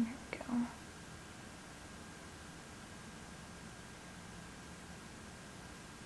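A brief, soft murmur in a woman's voice with a small click right at the start, then only faint steady room hiss.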